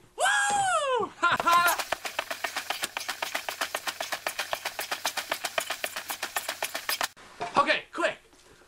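A man's drawn-out exclamation, then about five seconds of fast, even, sharp taps, about eight a second, made while he exerts himself to get his heart rate up. A short vocal sound comes near the end.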